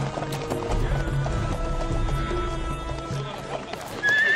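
Background music with sustained notes over a group of horses galloping, their hooves beating in a steady rhythm.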